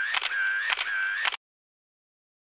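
Camera shutter sound effect: three quick shutter clicks about half a second apart, each followed by a short high whine, then a cut to dead silence about 1.4 seconds in.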